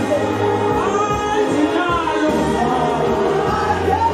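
Live gospel singing: a woman's voice leading through a microphone in sliding melodic lines over steady low accompaniment, with more voices singing along.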